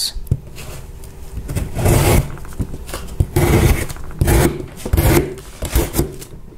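Bestech Bison folding knife's D2 steel blade slicing through corrugated cardboard in about five separate rasping strokes, starting about two seconds in.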